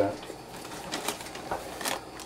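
A few faint short clicks and knocks over low room noise, with a brief spoken 'uh' about one and a half seconds in.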